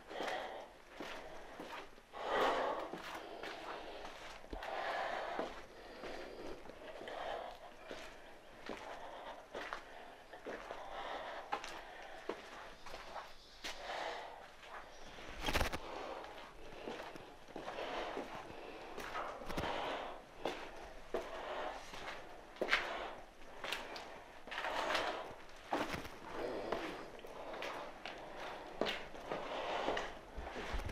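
Heavy breathing, a breath about every two seconds, over footsteps and scuffs going down stairs, with one sharper knock about halfway.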